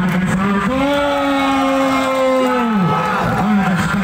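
A man's raised voice calling out, holding one long drawn-out note for about two seconds before it drops away.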